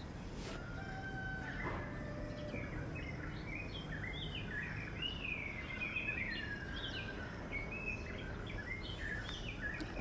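Birds calling: many short chirps and whistled, sliding notes overlapping throughout, over a steady low background noise.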